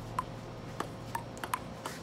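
Table tennis ball in a rally, bouncing on the table and struck by the paddles: a quick run of sharp clicks, about two or three a second.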